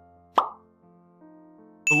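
Quiet background music with long held notes, and a single short pop sound effect about half a second in.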